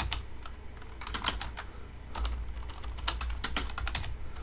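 Computer keyboard typing: short runs of key clicks with brief pauses between them, over a low steady hum.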